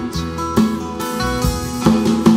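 Live band playing an instrumental bar between sung lines: acoustic guitar strumming over keyboard and bass.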